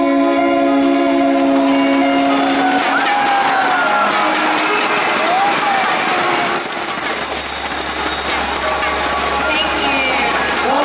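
Two singers hold the song's final sung note together for about two and a half seconds, then a concert audience breaks into applause and cheering, with some screams.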